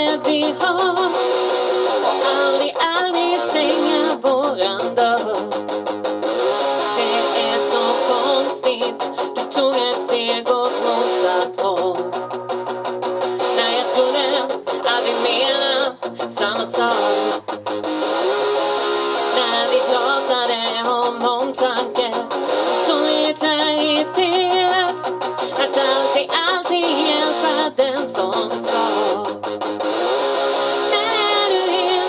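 Rock band playing a song live: electric guitar and singing over a bass line, heard through the band's small PA speakers.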